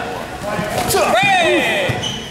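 High-pitched shouting voices during point-karate sparring, strongest a little past the middle, with a short sharp hit just under a second in.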